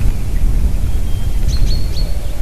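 Wind buffeting the nest-camera microphone in a steady low rumble. In the second half a small songbird gives a few faint high, thin notes.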